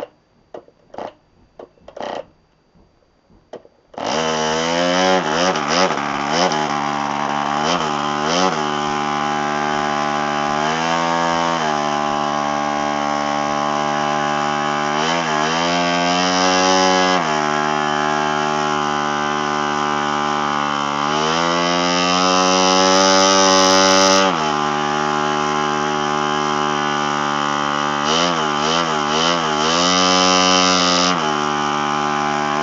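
PAW 29 model aircraft diesel engine, freshly rebuilt, flicked over by hand on its propeller with a few short pops, then catching about four seconds in and running loudly on the test stand. Its speed sags and picks back up several times as the compression is set by a wire on the cylinder-head screw.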